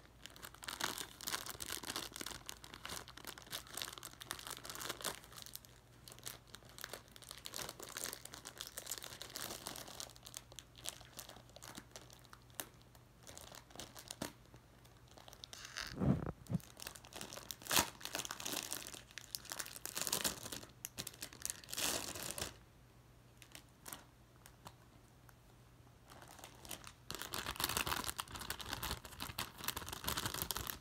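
Clear plastic wrapping being crinkled and torn off a spiral notebook, with irregular crackling, one soft thump about halfway through, a quieter pause about two-thirds of the way in, and denser crinkling near the end.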